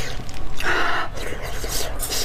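Close-miked wet chewing of fatty braised pork belly with the mouth closed: irregular squelching and smacking mouth sounds, with a louder breathy stretch about half a second in.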